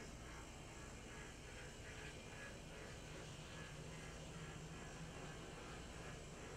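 HO-scale brass F7 A-B diesel model running along the track, its motor and gears making a faint, steady hum with light rhythmic wheel noise.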